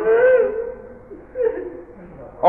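A man's voice chanting a verse of an Urdu elegy. The last note is held and fades away in the first half second, and a short, faint vocal sound comes about a second and a half in.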